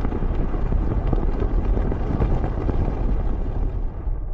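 Sound-designed storm effect: a steady, dense wind-like rush with a deep low rumble. It stands for the fierce winds and falling iron rain of a hot Jupiter.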